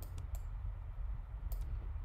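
A few sharp computer clicks, a couple near the start and another pair about a second and a half in, over a low steady hum.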